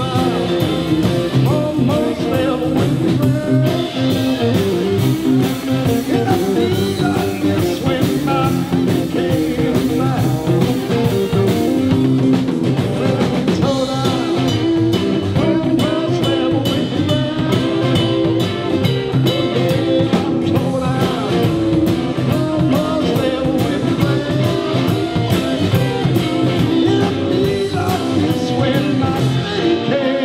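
Live rock and roll band playing, with drum kit and electric guitar, while a man sings lead into a handheld microphone.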